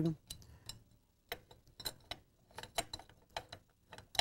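Faint, irregular metallic clicks and taps, about a dozen, from hand tools and bolts being worked on the starter cup and pulley of a Rotax engine.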